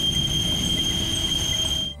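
Jet aircraft turbine whining steadily: one high, piercing tone over a low rumble. It cuts off suddenly at the end.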